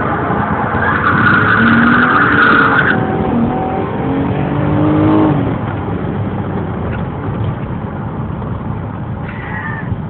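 Car launching hard from inside the cabin, its tyres squealing for about two seconds and smoking as they spin. The engine then revs up in pitch until about five seconds in and eases to a steady cruise.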